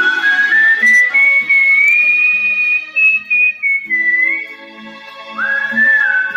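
A person whistling a melody over instrumental backing music. The whistled line climbs step by step and holds a high note, breaks off briefly a little past the middle, then slides up into a new phrase near the end.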